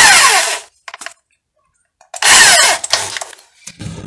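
Handheld electric drill run in two short bursts about two seconds apart, each about a second long, its whine falling in pitch as the motor spins down.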